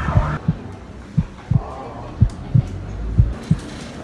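Heartbeat sound effect: a slow lub-dub, double low thumps about once a second, over a faint low drone.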